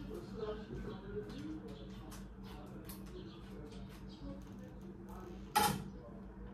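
Spoon scraping the flesh and seeds out of a halved pumpkin, a run of short scrapes and clicks over a steady low hum. A single sharp knock near the end.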